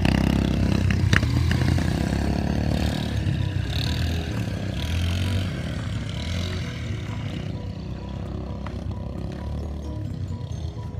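Quad bike (ATV) engine running as it rides off over dirt, loudest at first and fading steadily as it moves away.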